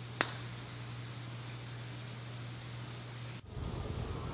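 A golf driver striking a ball off the tee: one sharp click just after the start, over a steady hiss. Near the end the hiss cuts off and a louder outdoor background takes over.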